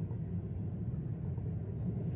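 Freight train of gondola cars rolling past at a level crossing: a steady low rumble.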